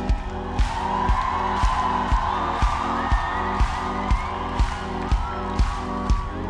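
Live pop music played through a festival PA, driven by a steady kick-drum beat of about two strokes a second under sustained synth and instrument lines.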